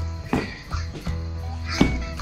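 Background music with a pulsing bass, held tones and a couple of sharp percussive hits.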